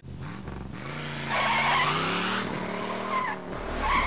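A car engine revving, its pitch rising, with a tire squeal in the middle.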